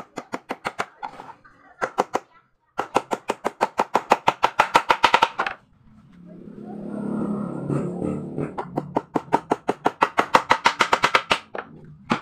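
A small hammer driving nails into a wooden board in quick runs of light strikes, about six a second, in three bursts. Between the second and third runs there is a low rustling rumble as cloth brushes close to the microphone.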